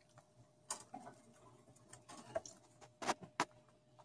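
Light, irregular clicks and ticks of a wire rat cage's bars as pet rats clamber on them, with the sharpest pair about three seconds in.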